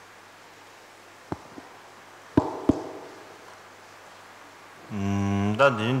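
A microphone on its stand being handled and adjusted: a few sharp knocks and bumps between one and three seconds in, the last two the loudest, over a low hiss. A man's voice starts near the end, first held on one sound, then speaking.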